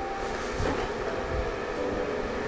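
Cardboard inner box sliding out of its outer cardboard sleeve, a steady rubbing scrape with a couple of soft low knocks.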